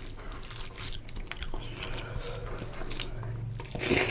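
Fingers squishing and kneading rice into oily curry on a metal plate: a busy run of small wet squelches and clicks. A louder wet sound near the end as the handful goes to the mouth.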